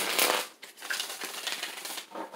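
A deck of tarot cards being riffle-shuffled and bridged: a dense rapid flutter of cards flicking against each other, loudest at the start, with a brief break about half a second in before a second run of fine crackling.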